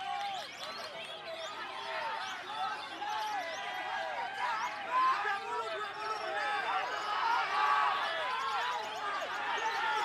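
Many caged songbirds, white-rumped shamas among them, singing at once: a dense, unbroken tangle of overlapping whistles, chirps and rapid chatter.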